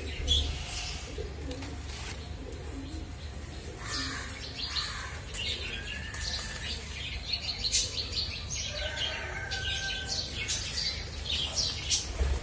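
Several small birds chirping and trilling, short overlapping calls throughout with a few brief whistled notes, over a low steady rumble.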